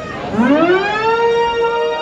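A single sustained instrument note with rich overtones slides up in pitch from low, starting about a third of a second in, then holds steady as the song begins.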